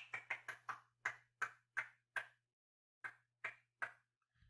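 A quick, irregular run of about a dozen short, sharp clicks, with a pause of nearly a second in the middle. A faint low hum comes and goes with them.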